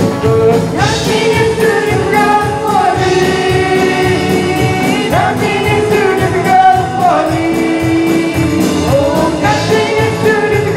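Live gospel worship song: several male and female singers sing together, holding long notes and sliding between them, over electric guitars and a steady beat.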